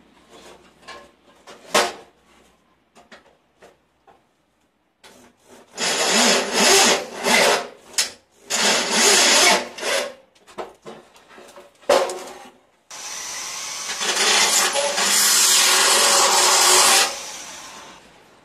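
Electric drill boring a hole through the steel bumper frame of a minivan in several bursts of a couple of seconds each, with the longest run of about four seconds near the end; a few light knocks of handling come first.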